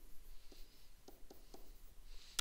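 Faint taps and short scratches of a stylus writing on a tablet screen, a few light strokes spread through the moment.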